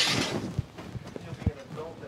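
Two soft knocks, about half a second and a second and a half in, under faint voices and the breathy tail of a laugh.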